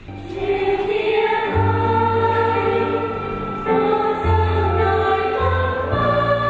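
Choir singing a hymn, starting a moment in, with long held notes over a steady low accompaniment.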